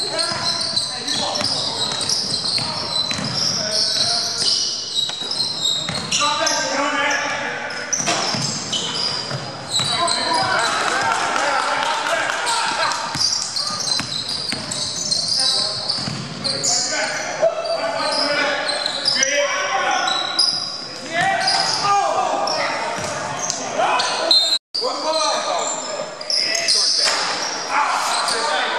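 Basketball being dribbled on a hardwood gym floor during play, with players' voices calling out, echoing around the hall. The sound cuts out for a split second about three-quarters of the way through.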